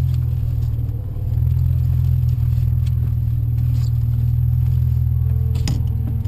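Audi B5 S4 twin-turbo V6 running at low revs, a steady low drone heard from inside the car's cabin as it rolls slowly. The drone eases off briefly about a second in, and a short clatter sounds near the end.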